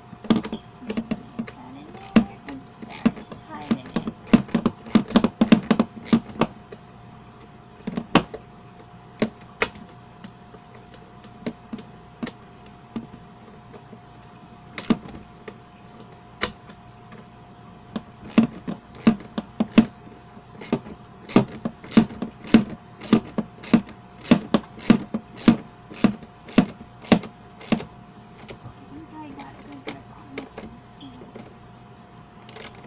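A metal wrench clicking against a bolt head as a bolt is tightened through a plastic wagon tub: sharp metallic clicks in quick clusters, a dense burst in the first several seconds, then a regular run of about two clicks a second in the second half. A faint steady hum runs underneath.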